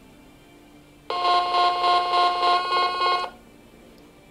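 Homemade Arduino synthesizer playing one steady electronic note for about two seconds, starting about a second in. Its level pulses about three times a second as the low-frequency oscillator, set to a square wave, modulates it.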